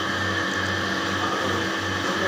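Steady droning hum of background machinery, even and unchanging.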